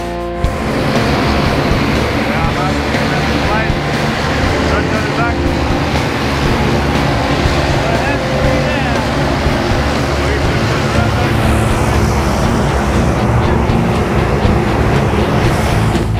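Background music mixed over the loud, steady noise of a propeller aircraft's engine.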